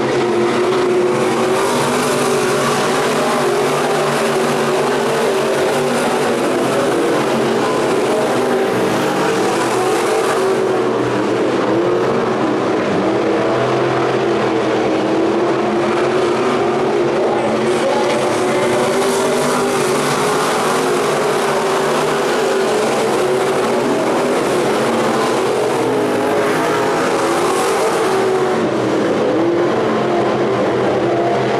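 Several Sport Mod dirt-track race cars running laps together on a dirt oval, their engines a loud continuous drone whose pitch rises and falls as they go through the turns and straights. The sound grows brighter twice, over the first ten seconds or so and again over the last ten.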